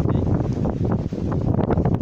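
Wind buffeting a phone's microphone on an open beach: a loud, uneven rumbling noise that rises and falls with the gusts.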